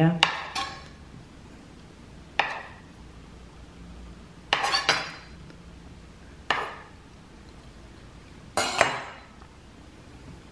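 Kitchen knife cutting through a soft marzipan roll and knocking on a cutting board, one sharp cut about every two seconds.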